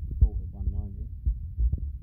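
A man's voice in short, muffled stretches of speech over a steady low rumble, with a sharp low thump about a quarter of a second in.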